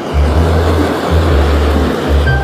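A steady hiss from a handheld kitchen blowtorch flame held on melted cheese, over background music with a repeating bass line.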